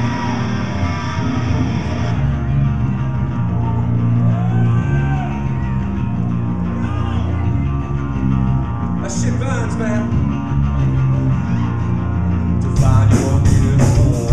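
Live rock band playing: electric guitar and bass guitar riff with a heavy low end. Near the end the drum kit comes in hard, with cymbal hits about four a second.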